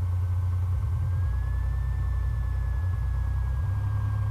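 Piper Saratoga's six-cylinder Lycoming piston engine idling at low power while taxiing, a steady low drone. A faint thin whine sits above it, rising slightly about a second in and then settling back.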